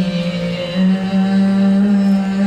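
Female voice singing a dhrupad alaap, holding one long steady low note without words. Beneath it a tanpura drone rings steadily.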